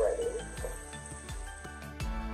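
Background music with a steady beat, over a faint sizzle of food frying in the pan as green beans go into the hot oil with the shrimp.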